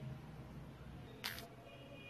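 A single short, sharp click about a second in, at a splice in the recording, over a faint steady low hum.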